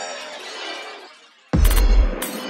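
Techno track: a noisy, glassy shimmering effect fades away over the first second and a half, then after a brief drop-out a loud, deep bass hit comes back in about 1.5 s in.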